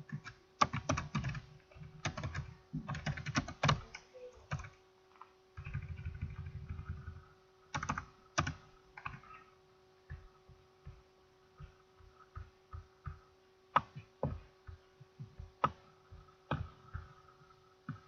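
Irregular clicks and taps of typing on a computer keyboard, in uneven runs with short pauses, over a steady electrical hum.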